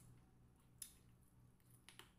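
Faint crackles of crispy fried chicken skin and meat being torn apart by hand, with two sharp crackles, one just under a second in and one near the end.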